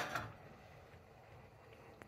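Near silence: faint steady kitchen room tone, with a tiny click near the end.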